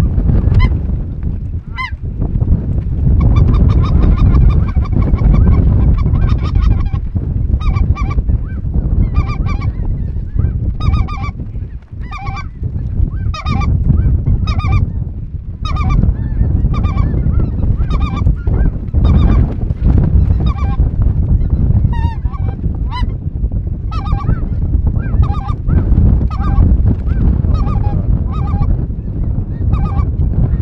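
A large flock of geese calling in flight: many overlapping honks, repeated continuously, over a steady low rumble.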